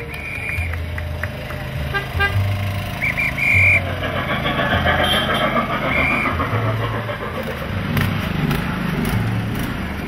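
A high whistle tooting in several short blasts, the loudest and longest about three and a half seconds in, over a low engine rumble from the passing procession vehicles.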